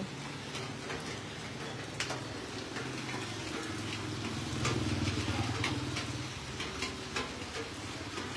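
Whole pig turning on a rotisserie spit over charcoal: a low steady hum, a little louder in the middle, with scattered small crackles and ticks.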